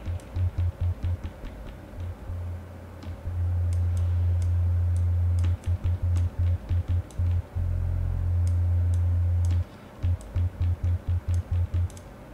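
Deep synthesizer bass from the Diversion software synth, a sine-oscillator patch with light overdrive through analog low-pass filters, being auditioned. It plays a run of short repeated notes, then notes held for a second or two with one change of pitch near the middle, then short stabs again near the end. Light clicks of keys being pressed sound among the notes.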